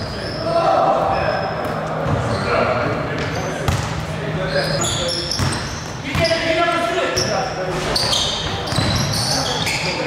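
Pickup basketball game on a hardwood court in a large gym: a basketball bouncing, sneakers squeaking in short high chirps, and players' voices throughout.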